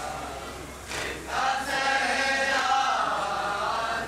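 Group of men chanting an Urdu noha (mourning lament) in unison, without instruments. The voices pause briefly about a second in, then resume with a long sustained line.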